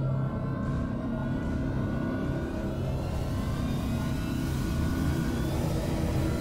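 Background score: a low, steady suspense drone with a rumbling bottom end and no beat.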